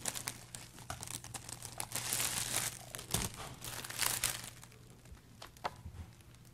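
Crinkling, rustling handling noise: a dense run of irregular crackles and clicks lasting about four and a half seconds, thinning to a few scattered clicks near the end.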